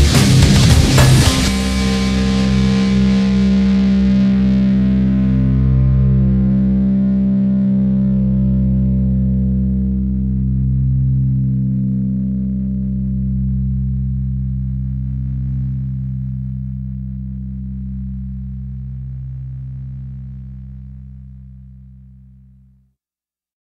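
Heavy rap-metal band playing loud until about a second in, then stopping and leaving one distorted electric guitar chord ringing on, slowly fading away.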